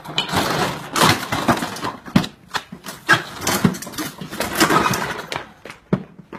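A motor scooter being wrenched, knocked over and smashed: a run of knocks, crashes and cracking plastic body panels, with a sharp hit near the end.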